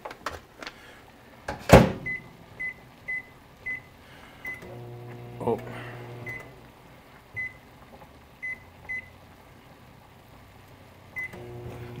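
Over-the-range microwave oven being shut and set for its 90-second rice cook: a sharp click of the door closing about two seconds in, then a string of short, high keypad beeps spread through the rest of the time. A brief low hum of the oven running comes around the middle.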